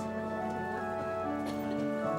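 Organ playing a slow prelude in sustained held chords, with a new note entering about halfway through.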